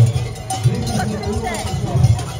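Large cowbells worn by Krampus figures clanging irregularly as they move.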